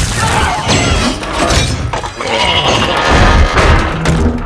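Loud action-film sound mix of giant robots fighting: repeated heavy metal impacts, crashing and shattering debris, with music underneath.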